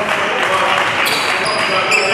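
Basketball being dribbled on a hardwood gym floor, with brief high-pitched sneaker squeaks and voices echoing in the gym.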